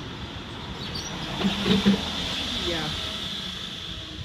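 A woman laughs briefly about halfway through, over steady outdoor street noise: a low rumble, with a hiss that swells through the middle and fades near the end.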